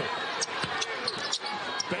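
Court sounds of a basketball game: a series of sharp sneaker squeaks and ball or foot thuds on the hardwood, over the steady noise of the arena crowd.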